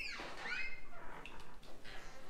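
A door squeaking on its hinges as it swings open: a high squeal falling in pitch at the start, then a shorter squeal about half a second in.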